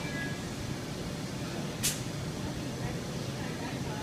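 Restaurant room noise: a steady low rumble, with a short sharp hiss about two seconds in.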